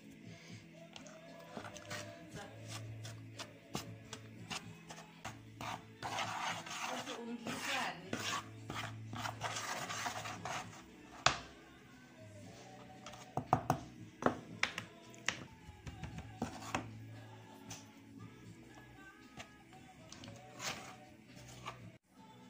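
A plastic spoon stirring flour and spice mix in a bowl, a gritty scraping and rubbing that is loudest from about six to eleven seconds in, with a few sharp taps against the bowl after that. Soft background music plays underneath.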